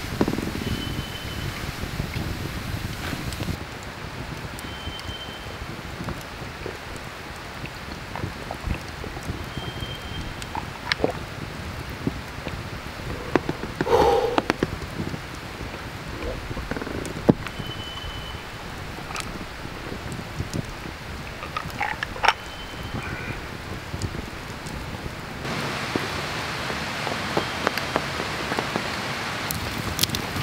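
Wood campfire crackling, with scattered sharp pops over a steady hiss.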